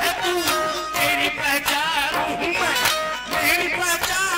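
Live qawwali music: a wavering melody with held notes over a steady drum beat.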